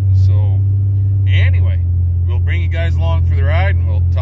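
Pickup truck's engine running, a steady low drone heard inside the cab, under a man talking.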